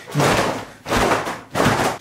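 Damp, freshly washed work pants shaken out by hand, the fabric snapping and flapping in three quick strokes about half a second apart.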